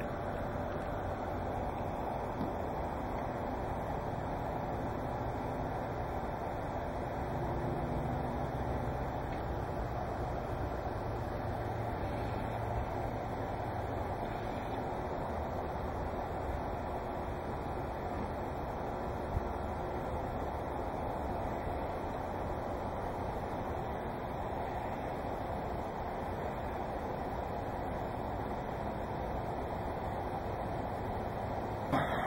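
Steady outdoor background noise with no distinct event. A faint low rumble swells about eight seconds in and fades by about fourteen seconds, and there is one small click near twenty seconds.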